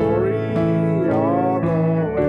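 A church congregation singing a gospel hymn with guitar accompaniment.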